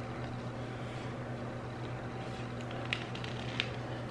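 Steady low hum of room background, with two faint clicks late on as hands work the plastic camera grip.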